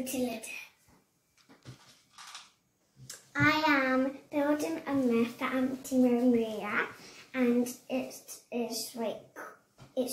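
A young child's voice talking, starting about three seconds in after a few faint short sounds.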